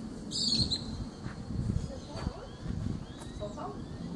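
Birds calling, with a short, bright high chirp about half a second in and fainter thin chirps later, over faint voices.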